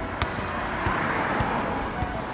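A car passing on the road, its noise swelling and then fading, with a couple of light knocks of a football being kept up off foot and knee.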